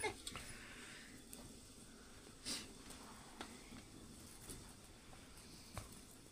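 Quiet kitchen with a few faint crackles and ticks from a wood fire burning under an iron griddle, spread through the stretch, one a little louder about halfway.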